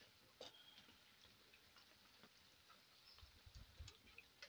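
Ring doughnuts frying in a wok of hot oil, heard only as a few faint, scattered pops and ticks over near silence.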